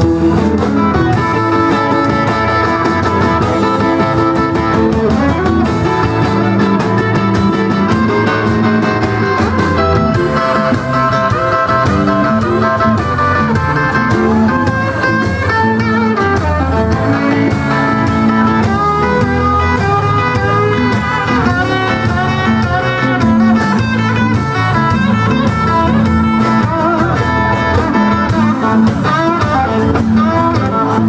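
Live electric blues band playing an instrumental passage: electric guitars over bass, drums and Hammond B3 organ. In the second half a lead line with bent, wavering notes comes forward.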